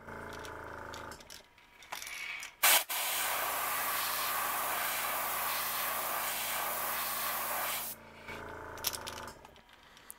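Airbrush spraying black paint onto a crankbait: a sharp click about two and a half seconds in, then a steady hiss of air and paint for about five seconds. A low hum is heard briefly at the start and again near the end.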